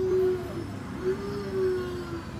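A baby vocalizing in long, drawn-out notes: three held sounds at a steady pitch, each dipping slightly at its end.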